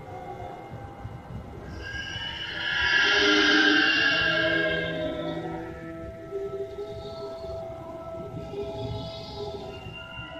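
Eerie wailing sounds picked up by a phone's microphone in a basement: several held pitched tones sounding together, swelling louder about two seconds in and easing off after about five. The sounds are unexplained, claimed to be paranormal.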